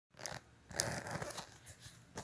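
Handling noise from a phone held close to its microphone: a short burst of rustling and crackling, then a longer one lasting most of a second.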